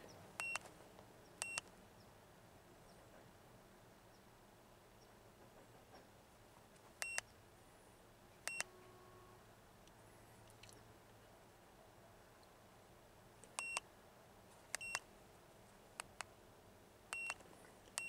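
Handheld Topdon OBD2 scan tool giving short, high key-press beeps as its buttons are pressed to move through the menus, about eight beeps spaced unevenly with near silence between.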